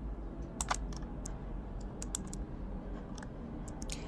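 Scattered sharp clicks from working a computer's mouse and keyboard, in small pairs about half a second in and about two seconds in, over a low steady hum.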